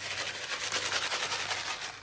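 Plastic bag of grated cheese crinkling and rustling as it is shaken out over a pizza: a continuous run of small crackly rustles.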